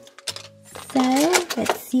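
Light plastic clicks and rattles from a clear plastic blister tray of small toy figures being handled, with a woman's voice starting just at the end.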